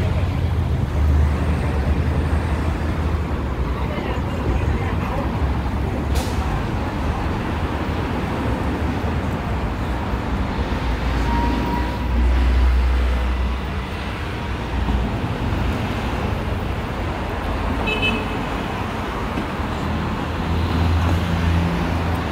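City street traffic: steady road noise from passing cars and trucks, with a low rumble that swells a few times as vehicles go by.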